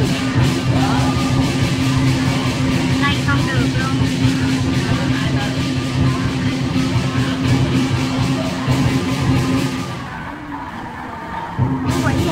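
Lion dance percussion, drum and cymbals beating out a steady rhythm, over the chatter of a large crowd. The beat drops away for a moment near the end.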